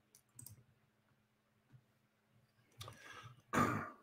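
A few faint computer-mouse clicks in a quiet pause, then a short cough-like throat noise from a man near the end.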